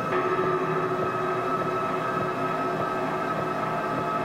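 Ambient drone music: many sustained tones layered over a steady hiss, made largely from processed samples of a detuned electric guitar. Just after the start a new lower tone comes in and holds.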